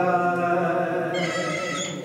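Chant-like music: one long note held at a steady pitch, slowly fading toward the end.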